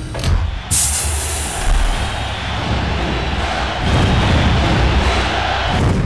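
Loud closing music, dense and continuous, with a sharp bright hit about a second in.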